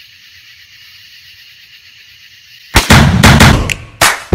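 Faint steady high hiss, then about three seconds in a sudden loud blast-like burst that lasts about a second.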